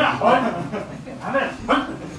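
Indistinct speech: people talking, in short broken phrases.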